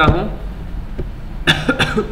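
A man coughs briefly near the end, over a low steady hum.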